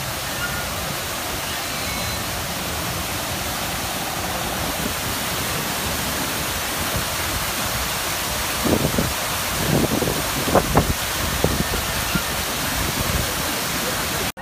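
Waterfall splashing steadily into a pool, with a few brief louder sounds over it a little past the middle.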